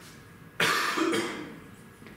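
A man coughs into a handheld microphone. The cough starts suddenly about half a second in and trails off over about a second.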